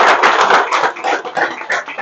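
Audience applauding: a dense patter of many hands clapping, thinning out in the second half.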